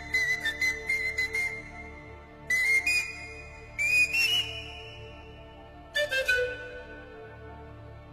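Pan flute playing a slow melody in breathy-attacked phrases with long held high notes. One note bends upward about four seconds in, and another slides down into a held note about six seconds in. Soft sustained orchestral strings play underneath.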